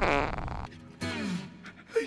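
A loud, rumbling fart that fades out early, followed about a second in by a short sound falling in pitch.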